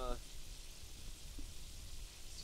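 A faint, steady hiss with a low rumble, typical of light wind on the microphone outdoors. A man's spoken word ends right at the start.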